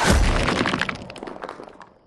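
A sudden loud smash and shatter, followed by a rapid scatter of cracking, breaking pieces that dies away over nearly two seconds.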